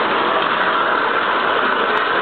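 Water running steadily from a bathtub tap onto hair being rinsed, an even noise with no breaks.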